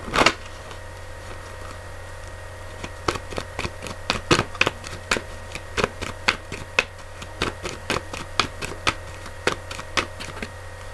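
A deck of oracle cards shuffled by hand: after a single knock at the start, a run of sharp, irregular card snaps, about two or three a second, begins a few seconds in, over a steady low hum.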